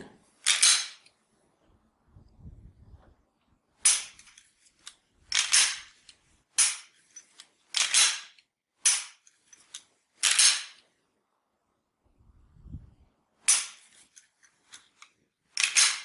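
Dry-fire trigger snaps and metallic clacks from a pistol being worked by hand, about ten short sharp sounds at irregular intervals over five shots. There are two faint low thumps of handling in between.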